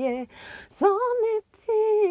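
A woman singing a slow, wordless melody unaccompanied, in long held notes. She takes a breath just after the start, then rises to a higher held note about a second in, breaks off briefly and takes up another long note near the end.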